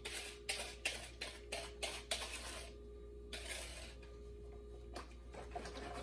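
A kitchen utensil scraping thick whisked egg yolk and sugar out of a small bowl into a larger mixing bowl. A quick run of scrapes and taps lasts about two seconds, then softer scraping.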